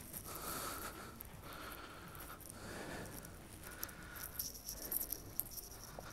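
Quiet indoor room tone with faint scuffs and a few small clicks in the second half, from footsteps and the handling of a hand-held camera as it moves around a parked car.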